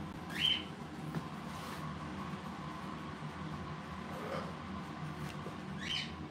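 Two short upward chirps from a pet parrot, one about half a second in and one near the end, over a steady faint household hum.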